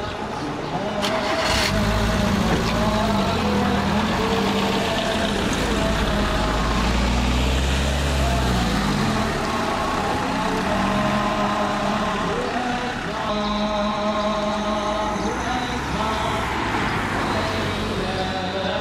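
A DFSK mini truck's small engine running and pulling away, its pitch rising and falling as it moves off through the gears. Voices chanting come in during the last few seconds.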